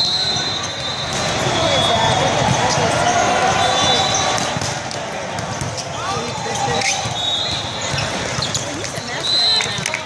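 Indoor volleyball rally: the ball being hit, with short high sneaker squeaks on the court, over a steady babble of many voices echoing in a large hall.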